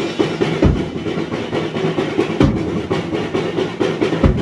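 Acoustic drum kit played freestyle with sticks: a dense run of drum and cymbal strikes, with two heavy bass drum strokes, about half a second in and again around two and a half seconds.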